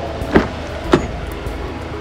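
Two short sharp clicks about half a second apart from a Mercedes GLB 35 AMG's rear door handle and latch as the door is pulled open, over background music.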